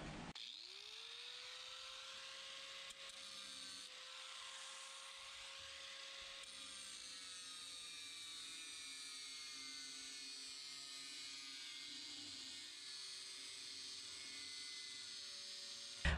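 Angle grinder with a metal cutting wheel, faint, spinning up to speed just after the start and then scoring the lid of a steel 55-gallon drum. Its steady whine sinks slowly in pitch through the second half as the wheel bites into the steel.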